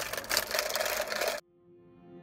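Paper bag and foil pie wrapper crinkling as they are handled, cutting off abruptly about a second and a half in. Background music then fades in.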